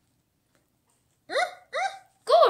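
A child's voice making two short, quick vocal sounds with a rising pitch, one right after the other, about a second and a half in.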